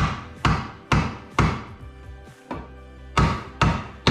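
Wooden mallet knocking an aluminium profile down onto its connector: four sharp knocks about half a second apart, a pause of nearly two seconds, then two more.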